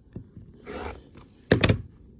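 Rotary cutter drawn briefly through cotton fabric along a quilting ruler on a cutting mat, a short scratchy pass a little under a second in. It is followed about a second and a half in by a sharp, loud thunk, the loudest sound.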